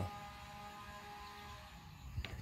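Quiet room tone with a faint steady electrical hum, easing off slightly near the end.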